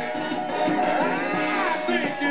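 A pop song on a vinyl single playing through a vintage portable autochange record player's own speaker, with a thin, top-limited sound. One long sung note swells up in pitch and falls back over guitar and bass.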